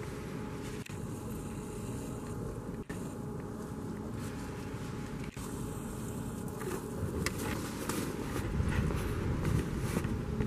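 Steady outdoor street background noise with a low rumble. It cuts out briefly three times in the first half, and near the end it grows a little louder, with scattered light taps.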